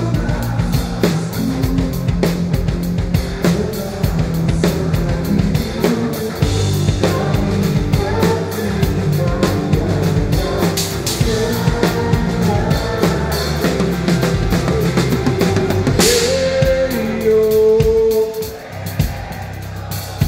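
Live rock band, heard close from the drum kit's microphones: a Yamaha drum kit with Sabian cymbals plays hard under keyboards and guitar. About 16 seconds in, a cymbal crash marks the end of the drumming, and held keyboard and guitar notes ring on.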